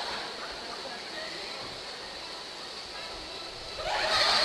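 Audience murmur and faint voices in a lull between rounds of applause, with the applause swelling up again right at the end.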